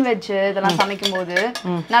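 A woman talking while steel kitchen utensils clink several times against a stainless-steel tumbler.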